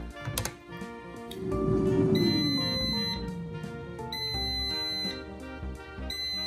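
Background music, over which an electronic high-pitched beep sounds for about a second at a time, repeating every two seconds: the Gourmia air fryer signalling that its cooking cycle has finished.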